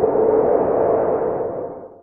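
Intro logo sound effect: a swelling electronic whoosh with a steady low tone running through it, fading out near the end.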